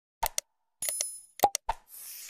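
Sound effects of a like-and-subscribe animation: two quick mouse-style clicks, then a short bell ding a little under a second in, followed by two more clicks.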